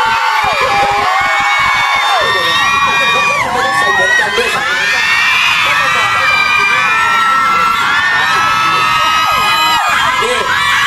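Audience cheering and screaming, many high-pitched voices overlapping loudly.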